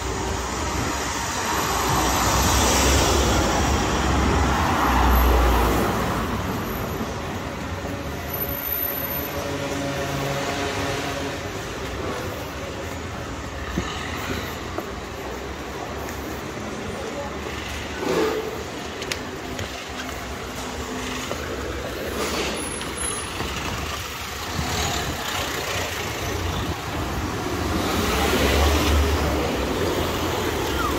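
City street traffic: cars passing on the road, the noise swelling a few seconds in and again near the end, over a steady background hum of the town.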